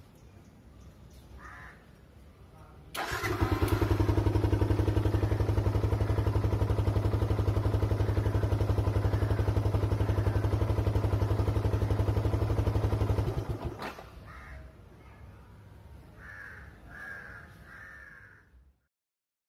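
Yamaha single-cylinder motorcycle engine starting about three seconds in and idling steadily with an even pulse, then cutting off abruptly about ten seconds later.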